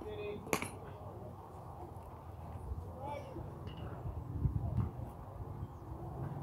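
Baseball field ambience: faint, distant voices of players over a low outdoor rumble, with one sharp knock about half a second in.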